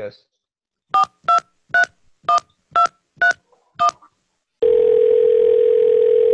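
Touch-tone telephone keypad dialing seven digits, each key press a short two-note beep, about two a second. Then a steady ringing tone begins near the end as the call goes through.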